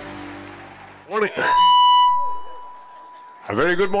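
Orchestral music fading out, then a loud, steady, single-pitched electronic beep lasting about half a second, whose tone fades away over the next second or so.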